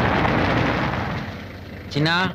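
A car driving along a dirt lane and pulling up, its engine and tyre noise fading away over the second half.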